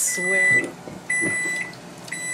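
Microwave oven timer beeping to signal that the countdown has ended: two high half-second beeps about a second apart.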